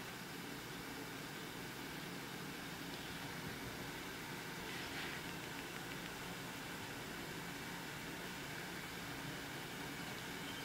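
Steady hiss of a pot of water heating on a stovetop as it comes to the boil.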